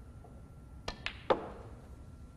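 Snooker shot: the cue tip clicks on the cue ball about a second in, the cue ball clicks against a red a moment later, then a louder knock with a short ringing tail as the red drops into the pocket to be potted.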